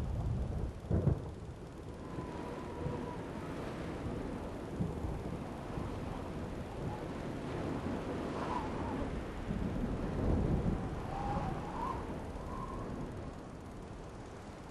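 Thunderstorm: deep rolling thunder over a steady hiss of rain, loudest in a rumble about a second in.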